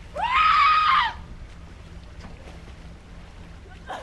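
A woman screaming once, about one second long, the pitch rising at the start, held, then dropping away, followed by faint steady background noise.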